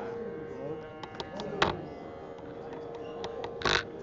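Hall ambience of low, indistinct voices over a steady hum, with a few sharp clicks and a short, louder burst of noise near the end.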